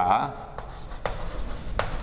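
Chalk writing on a blackboard: a few short, sharp taps and scrapes as the strokes of letters are made.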